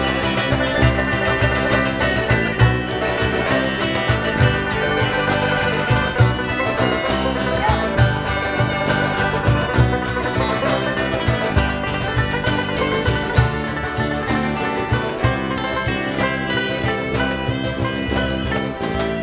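A live folk band playing an instrumental passage: strummed acoustic guitars with accordion and other plucked strings, at a steady beat.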